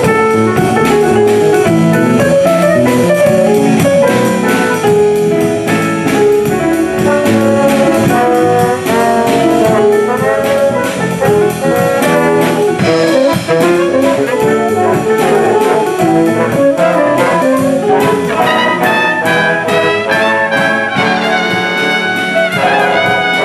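Big band playing swing jazz live, with saxophones, trombones and trumpets over a steady beat; the brass rises higher and louder near the end.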